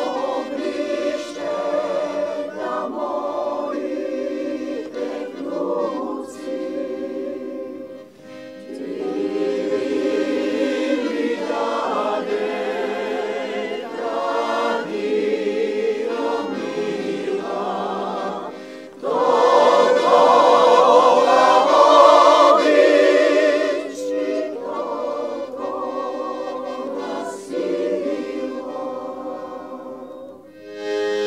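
Mixed choir of men's and women's voices singing a folk song in parts, accompanied by accordion. The singing breaks briefly between phrases about 8 and 19 seconds in and is loudest in a full passage that follows the second break.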